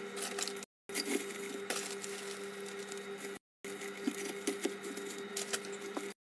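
Light rustling and small clicks of rose stems and leaves being handled and pushed into a ceramic vase, over a steady low hum. The sound breaks off twice into brief silence.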